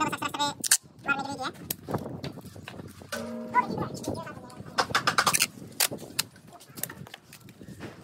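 Masking tape being pulled off the roll, torn and pressed onto a tractor tyre's sidewall, giving a series of short crackles that are thickest about five seconds in, with voices in the background.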